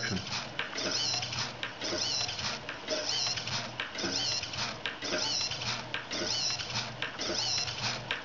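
Hobby servo and spinning gyro wheel toy: a whirring mechanical sound with a high whine that rises and falls and swells about once a second, each time the servo tilts the wire loop track up and back down to keep the wheel spinning.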